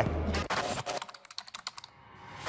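A run of quick, sharp clicks like typing on a keyboard that thins out and fades, following a sound that stops about half a second in.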